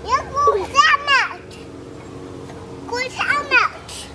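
A toddler's high-pitched wordless vocalizing, its pitch sliding up and down: one spell at the start and another about three seconds in.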